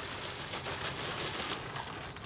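Plastic packaging crinkling and rustling in irregular bursts as hands pull a bagged spare helmet liner out of the box.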